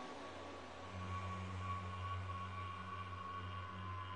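Ambient electronic music: a hiss-like wash of noise with a faint held high tone, joined about a second in by a steady low synth drone.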